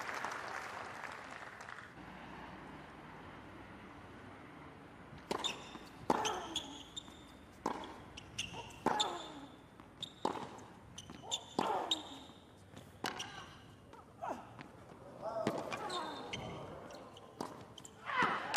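Tennis rally on a hard court: racket strikes and ball bounces about every second from about five seconds in, many strokes followed by a player's grunt, with brief shoe squeaks. Crowd applause dies away in the first couple of seconds.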